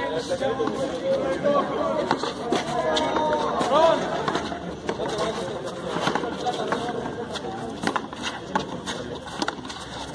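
A frontón ball in a rally, struck by gloved hands and smacking off the wall and concrete floor in a string of sharp, irregular impacts. Voices chatter underneath.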